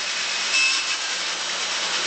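Electric drill running steadily, driving the spindle of a home-built honey extractor made from a plastic barrel.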